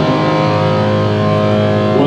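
Live band of electric guitar, acoustic guitar and bass guitar holding one sustained chord, the tones ringing on steadily without a change.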